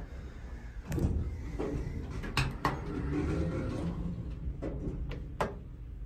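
Elevator doors sliding, with a low rumble that starts about a second in, followed by several sharp clicks.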